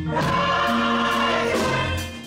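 Church choir singing a gospel song with organ accompaniment, holding a sustained chord for about a second and a half that eases off near the end.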